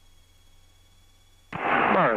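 Faint hiss with a thin steady tone on the aircraft's headset intercom. About one and a half seconds in, an aviation radio transmission cuts in suddenly: another pilot's voice making a traffic call.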